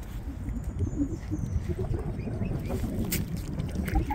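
Low, uneven rumble of wind on the microphone, with small soft pecks and rustles as a mute swan forages in the grass and mud at the water's edge. A single sharp click about three seconds in.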